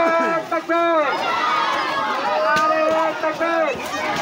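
Male voices chanting loudly in a crowd, in drawn-out phrases whose pitch swells and falls, with several held notes in a row.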